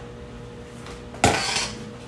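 A small metal spoon clattering against a bowl once, about a second in, ringing briefly, over a steady faint hum.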